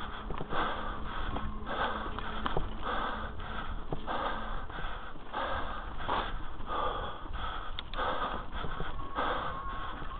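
Heavy, rhythmic breathing of a mountain biker close to the camera microphone, a breath about once a second, over a steady low rumble, with a few sharp clicks from the bike on the rough trail.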